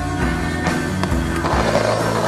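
Skateboard rolling on concrete under a music soundtrack with steady held bass notes, with a couple of sharp clacks about halfway through.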